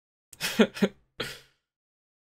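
A man's brief wordless vocal sound close to the microphone: two quick voiced pulses and then a breathier one, lasting about a second.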